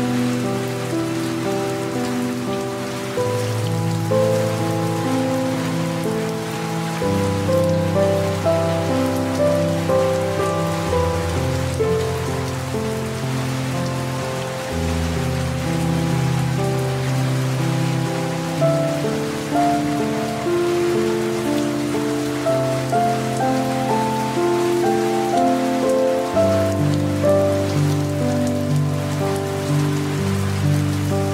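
Steady light rain hiss with soft, slow piano music over it: low bass notes held for several seconds each under a gentle melody.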